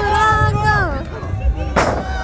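A wrestler's body hits the ring mat once, loud and sharp, near the end, with background music and voices.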